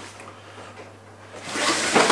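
Fabric gear bags rustling as they are handled and packed, quiet at first and growing louder in the last half second.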